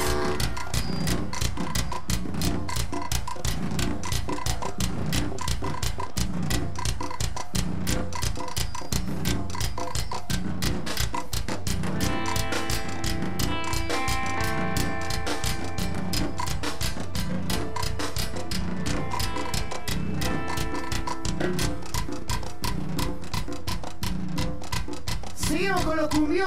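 Live cumbia band playing an instrumental passage: a steady, fast percussion beat over bass, with held chords from about twelve to sixteen seconds in.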